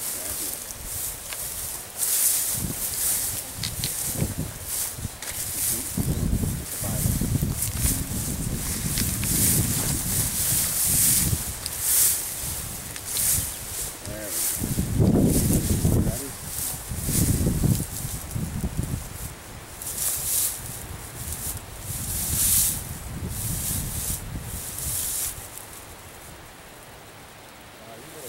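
Footsteps swishing through tall dry grass, with irregular rustling of grass and clothing and occasional low rumbles.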